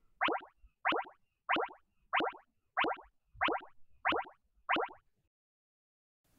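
Short cartoon-style pop sound effects, one for each beat of a conducting pattern, coming at an even pace of about one and a half a second: eight in a row, stopping about a second before the end.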